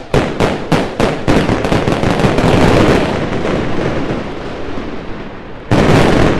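Fireworks: a quick run of sharp bangs, about three a second, blending into a dense crackle that slowly fades, then a fresh loud burst near the end.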